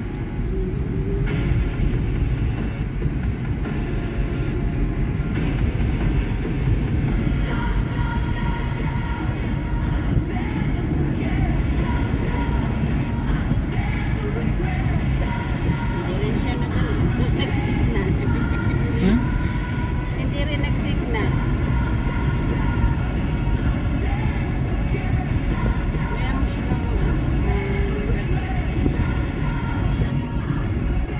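Steady road and engine noise inside a Honda car's cabin while driving at highway speed, with music playing from the car's speakers.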